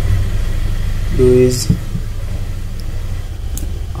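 Steady low background rumble, with a couple of spoken words about a second in.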